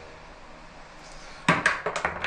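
Quiet room tone, then a quick cluster of sharp clicks and knocks about one and a half seconds in.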